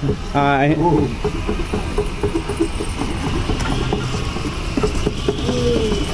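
Horse-powered sawmill drive turning: shafts, pulleys and belt running with a steady low hum and irregular clicks and rattles. A short voice comes in about half a second in.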